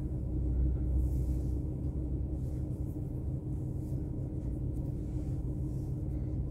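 Idling truck engine heard inside the cab: a steady low rumble with a faint even hum over it.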